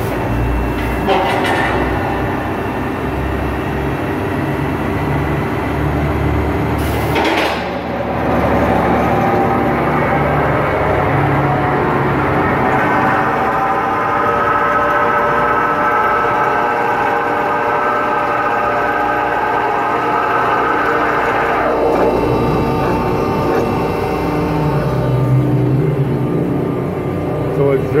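Accurshear 61356 hydraulic power shear starting up and running, its 10-horsepower three-phase motor and hydraulic pump humming steadily, with a clunk about a second in and another about seven seconds in. Midway a higher whine runs for several seconds and ends in a falling pitch as the digital back gauge travels in to one inch.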